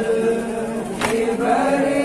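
Male voices chanting a noha (Shia lament) together, holding a long drawn-out line, with one sharp slap about a second in: a hand struck on the chest in matam.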